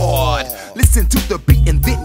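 G-funk hip hop track playing without transcribed lyrics: a deep bass line and drum beat, with a pitched line gliding downward at the start.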